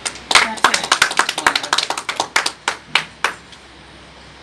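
A small group clapping hands: a short, uneven round of claps that stops a little over three seconds in.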